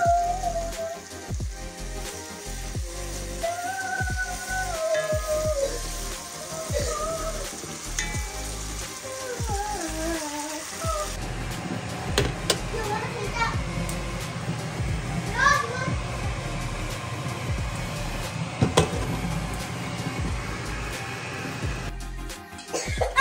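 Background music with a wandering melody over a steady hiss of food sizzling in a pot for about the first half. Midway the hiss stops, leaving a low hum with scattered sharp clicks and knocks.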